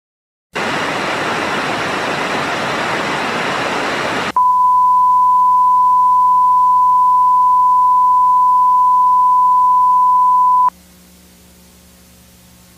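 A burst of steady static hiss, then the steady 1 kHz reference tone that goes with test-card colour bars, cut off sharply near the end, leaving only a faint hum and hiss.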